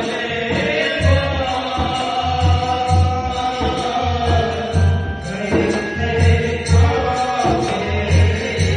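Male voices singing through microphones with long held notes, over a hand-played dholak (rope-laced double-headed barrel drum) keeping a steady, repeating deep beat.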